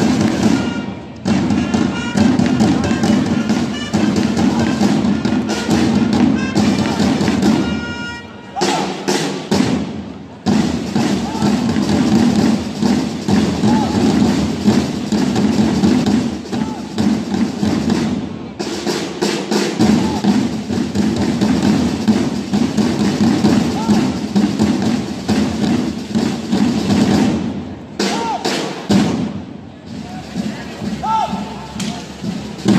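Parade drums of a historical flag-waving troupe's band playing a dense, continuous march rhythm, with brief long-held trumpet notes near the start and around eight seconds in.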